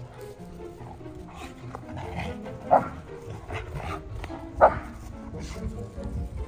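Dogs barking during rough play: two short, sharp barks about two seconds apart, over background music.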